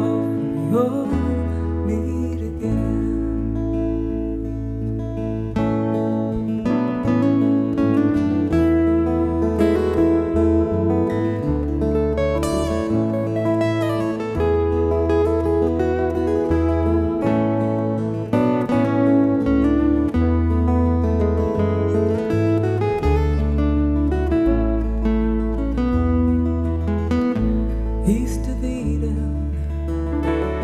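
Instrumental break of a live acoustic folk song: several acoustic guitars strummed and picked over sustained low bass notes that change every second or two.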